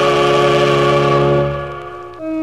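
Choir and orchestra holding one long sustained chord with a wavering vibrato, which fades away from about a second and a half in.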